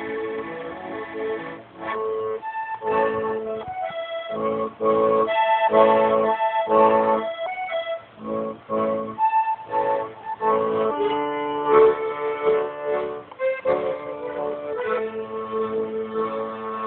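Piano accordion playing an instrumental passage: a run of short, rhythmic chords through the middle, giving way to longer held chords near the end.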